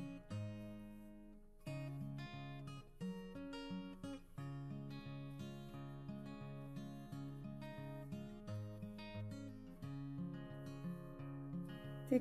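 Quiet background music of plucked acoustic guitar, notes picked one after another.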